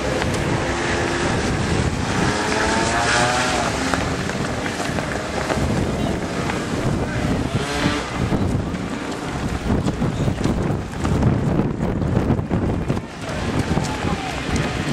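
Footfalls of a large pack of runners on asphalt, mixed with bystanders' voices and a low wind rumble on the microphone.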